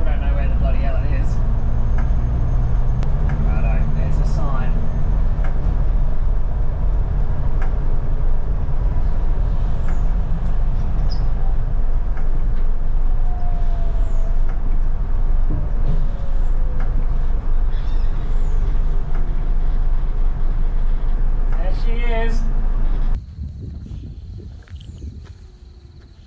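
A large 61-seat bus driving at highway speed, heard from inside the cabin: a loud, steady low rumble of engine and road noise, with light rattles and squeaks from the bus body. It cuts off suddenly about a second before the end.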